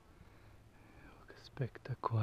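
A faint hush, then near the end a man's voice murmuring briefly, falling in pitch.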